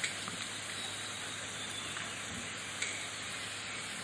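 Steady hiss of the recording's background noise with a faint low hum, and a faint click about three seconds in.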